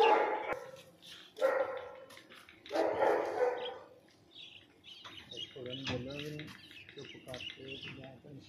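An animal barking: three loud calls about a second and a half apart, then quieter wavering voice sounds past the middle.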